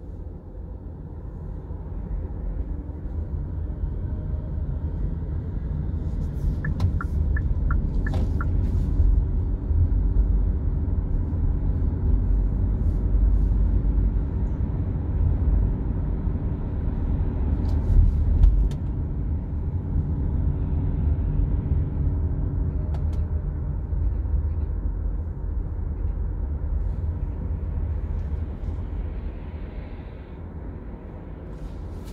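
Steady low rumble of a car's engine and tyres on the road, swelling over the first few seconds as the car pulls away and gets up to speed, then holding steady. A few faint clicks come a quarter of the way in, and there is a brief louder bump a little past halfway.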